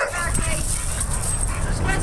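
Pit bull-type dogs vocalizing in play: a short high whine or yip just after the start and another brief one near the end, over a steady low rumble.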